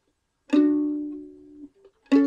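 Breedlove mandolin: one two-note chord plucked on the G and D strings about half a second in. It rings and fades, then is damped about a second later, with a faint short note just before the next pluck.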